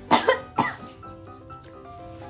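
A woman coughing a few times in the first second, her throat irritated from eating raw wild phak wan (Melientha suavis) fruit, over steady background music.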